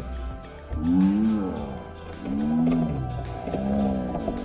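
A person's voice making long, drawn-out rising-and-falling 'oh' sounds, about three of them, each about a second long.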